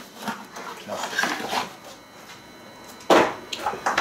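Clear plastic packaging and cardboard rustling as an item is handled and pulled out of a shipping box, with one loud crinkle about three seconds in.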